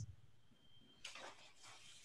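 Near silence: a pause on a video-call audio line, with a faint brief noise about a second in.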